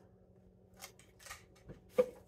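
Faint handling sounds from a plastic bottle and a shopping bag: a few short, light rustles and clicks, the sharpest click at the very end.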